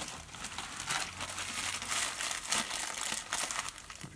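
Clear plastic bag of dubbing crinkling as it is handled, a dense run of small crackles.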